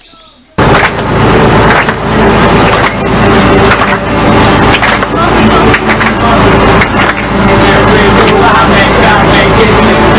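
Several acoustic guitars strumming together with voices, starting abruptly about half a second in, over a loud, steady low rumble and noise.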